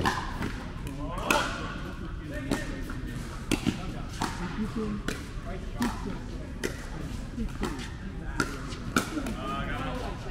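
Pickleball paddles hitting a plastic pickleball back and forth in a fast doubles rally: about a dozen sharp pops, each under a second or so apart.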